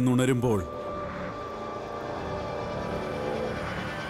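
A man's voice ends about half a second in, giving way to a steady low drone of dramatic background score with faint sustained tones.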